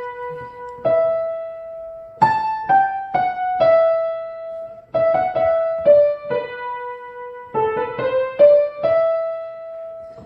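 Piano playing the descant soprano line one note at a time, a melody of about fifteen notes moving among its high notes. Each note is struck and left to ring.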